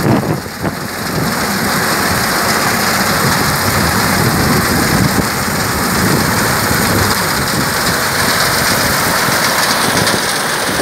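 Tractor engine running under load while its front-mounted reaper's cutter bar and chain drive cut standing wheat. Heard close up as a loud, dense, steady noise, uneven for the first second.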